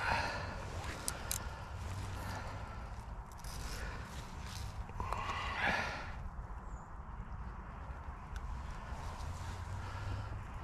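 Rustling and handling noise from a knotless landing net and bankside grass as hands take hold of a chub and lift it out, with irregular scuffs strongest at the start and about halfway through, over a low steady rumble.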